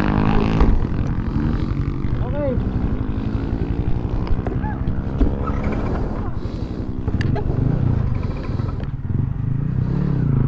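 Yamaha Sniper 155 motorcycle's single-cylinder four-stroke engine running steadily at low revs, its pitch drifting slightly, with a few light clicks.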